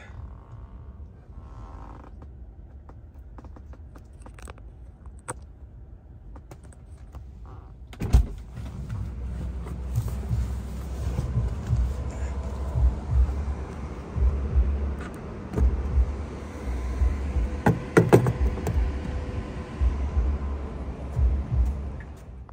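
Wind and handling noise rumbling on a hand-held phone microphone outdoors, starting with a sharp knock about eight seconds in, with a few sharp clicks near the end; before that only faint clicks over a low background.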